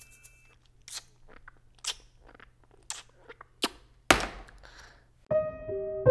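Sharp, wet mouth clicks of a pacifier being sucked, coming about once a second, the loudest about four seconds in. Soft piano music begins near the end.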